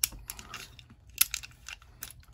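Light metallic clicks and ticks of a steel-framed Llama Especial .380 pistol being handled during field-stripping, its slide drawn back to line up the slide-stop notch; one sharper click about a second in.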